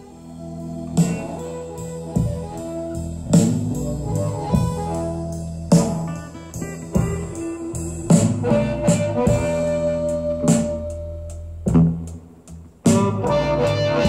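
Music played through a Marantz SR7010 AV receiver and bookshelf speakers, heard in the room, with a strong beat about every second. It grows louder over the first second as the volume is turned up.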